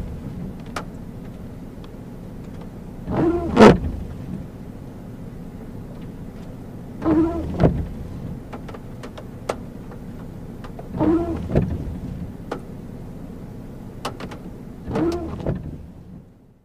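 Car windshield wipers sweeping across a rain-wet windshield about once every four seconds, five times in all, each pass of the rubber blades giving a short squeak and a thud over a steady low rumble.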